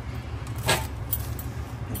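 Steady low hum of kitchen background noise, with one brief clatter about two-thirds of a second in and a couple of faint ticks after it.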